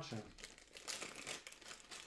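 Thin clear plastic bag crinkling in the hands as the coiled cable inside it is handled, a run of irregular crackles.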